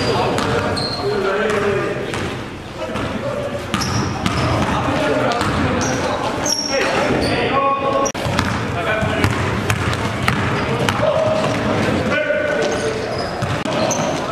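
Basketball dribbled on a hardwood gym floor amid players' shouts and chatter, echoing in a large gym, with short high sneaker squeaks scattered through.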